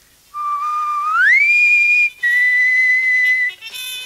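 A whistle blown twice as an emergency alarm call. The first blast starts low, glides up to a higher pitch and holds. After a short break comes a second, steady blast a little lower. Music comes in near the end.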